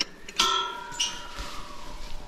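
Siren wailing, its pitch sliding slowly downward. About half a second in, a sharp clink rings briefly.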